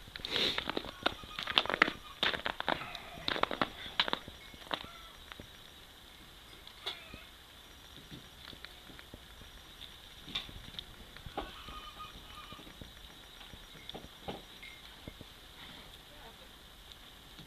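An Akita puppy and an older Akita play-wrestling on ice: quick scuffling and clicking, busy for the first five seconds, then only an occasional click.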